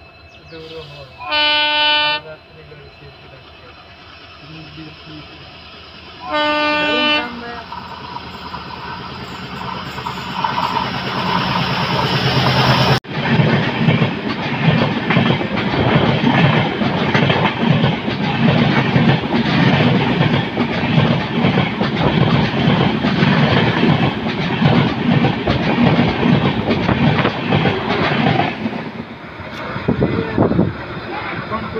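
A train horn sounds two blasts of about a second each, roughly five seconds apart. Then a passenger train passes close alongside on the adjacent track: a rising rumble turns into a loud rush of coaches with fast wheel clatter over the rail joints, which fades near the end.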